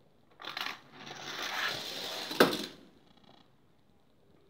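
A die-cast toy car rattling as it rolls down a plastic spiral track for about two seconds, with a sharp clack near the end, the loudest sound. A short clatter of plastic comes about half a second in.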